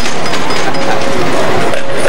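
Casino-floor din: a dense wash of background voices and machine noise, with a few short steady electronic tones from slot machines.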